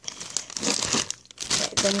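Clear plastic zip-top bag crinkling as it is squeezed and turned in the hands, with a short break just past a second in.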